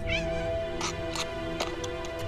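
A cat meowing: one short, wavering, high call near the start, then a few light clicks, over steady background music.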